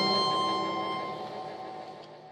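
Last chord of a song on nylon-string classical guitar and harmonica, held and fading steadily away.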